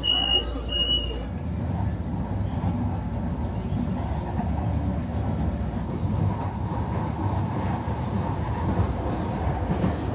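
Inside a Manila LRT Line 1 light-rail car: two short high electronic beeps, the door-warning signal, in the first second. Then the train runs with a steady low rumble.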